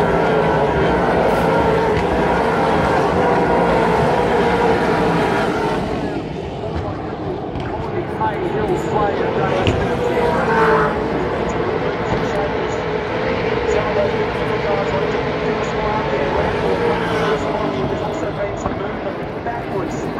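V8 Supercars race cars' V8 engines at full throttle as the cars pass along the straight, loudest for the first six seconds, then carrying on less loudly as the field goes around the circuit.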